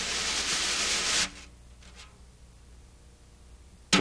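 Wire brush sliding across a coated snare drum head: one long swish that ends a little over a second in, then a faint tap about two seconds in.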